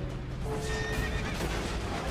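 Dramatic title music with a horse's whinny laid over it as a sound effect.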